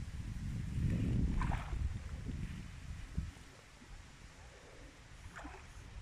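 Low wind rumble on the microphone, strongest in the first two seconds and dying down after about three, with a couple of faint brief sounds over it.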